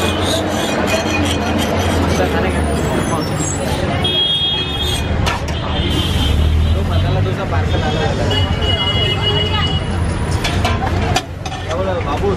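Busy street-stall ambience: people talking and road traffic running without a break, with a few short, high steady tones about four and nine seconds in.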